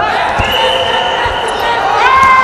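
Wrestlers' bodies thudding on the mat as one is lifted and taken down, a dull thump about half a second in and another later. Over it a long, drawn-out shout from the corner.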